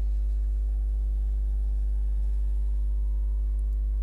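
Steady low electrical hum at mains frequency with a ladder of overtones above it, unchanging throughout.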